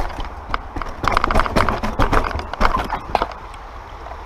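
Mountain bike rattling and clattering over a rough dirt trail: quick irregular knocks from the bike and tyres on roots and rocks, loudest in the middle and dying away about three seconds in as the bike slows. A steady low wind rumble on the helmet microphone runs underneath.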